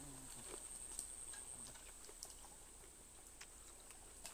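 Near silence: quiet outdoor ambience with a faint, steady high-pitched whine throughout and a few soft clicks. A brief, faint voice murmurs at the very start.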